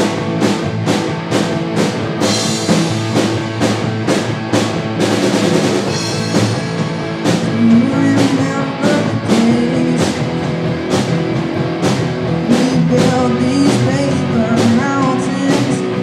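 Live rock music from a small band: two electric guitars and an electric bass over a Pearl drum kit keeping a steady beat, with some bending guitar or melody lines in the later part.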